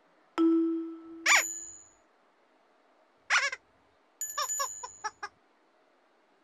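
Musical stepping stones sounding as they are trodden on, a series of toy-like musical effects. A ringing ding comes about half a second in, then a falling chirpy glide. A short warble follows after three seconds, and near the end a quick run of chirps under a high bell-like ring.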